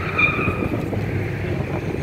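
Pickup truck engine idling with a steady low rumble, with outdoor wind noise on the microphone. A brief high-pitched tone sounds about a quarter second in.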